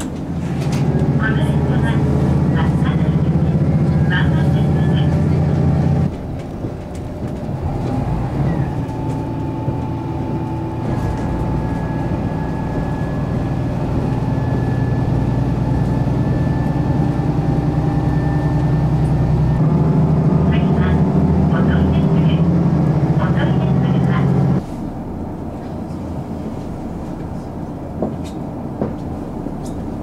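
Diesel railcar engine heard from inside a KiHa 54 railcar, a steady low hum. It is loudest in two stretches, about the first six seconds and again for several seconds past the middle, with quieter running between and after. The level changes abruptly at each change.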